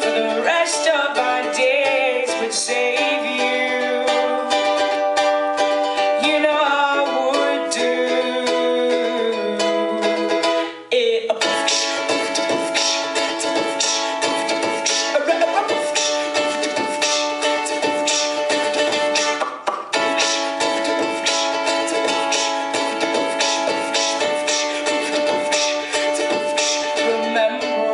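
A woman singing live while strumming a ukulele, the voice holding long notes over the chords, with two brief breaks in the music, about eleven seconds in and again around twenty seconds.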